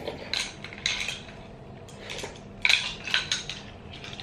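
A spoon scraping and clinking against a small cup, about five short strokes, the loudest a little before the end.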